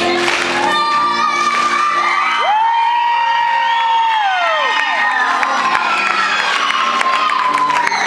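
A girl singing into a microphone with keyboard accompaniment, holding one long high note in the middle, while the audience cheers and whoops.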